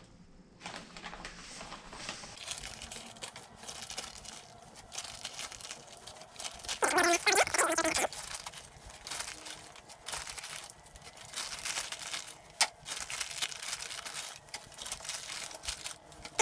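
A plastic bag of potting soil crinkling and rustling as soil is scooped out of it by hand and tipped into clear plastic terrarium boxes. It is loudest about seven seconds in, and there is one sharp click near the end.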